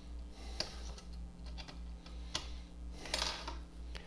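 Several light clicks and taps of small parts being handled by hand as a screw is worked into the metal-shielded housing of a Coleco Adam Data Drive, with a short scrape a little after three seconds in. A faint steady low hum runs underneath.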